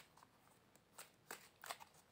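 A deck of tarot cards being shuffled by hand: faint, uneven soft flicks as cards slip from one hand to the other.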